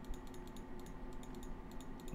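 Computer keyboard keys tapping: a quick, irregular run of light clicks.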